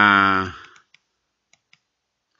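A held note at one steady pitch fades out within the first half-second. A few faint, scattered clicks of computer keys follow, in a small room.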